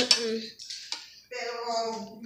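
Boys' voices holding drawn-out, level-pitched sounds mid-sentence, with a short light click or clink about a second in.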